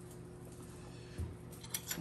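Quiet kitchen room tone with a steady low hum, a soft thump about a second in, and a few light clinks of a utensil on dishware near the end.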